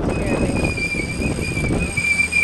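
Wind buffeting the microphone over the steady running of a sailboat's inboard engine, with a thin, high, steady whine.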